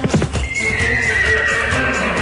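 Dance music track carrying a horse sound effect: hoofbeat clip-clop knocks, then a long whinny falling in pitch from about half a second in.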